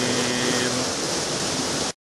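Steady rushing of a small waterfall and river, cutting off abruptly just before the end.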